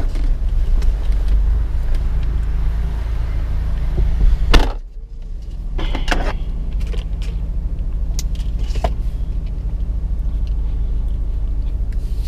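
Steady low hum of a car idling, heard inside the cabin, with a loud thud about four and a half seconds in as the passenger door is shut, and a few small clicks after it.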